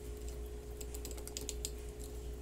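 A brief run of light, dry clicks and crinkles about a second in, from hands handling a cardboard medicine box over a plastic shopping bag.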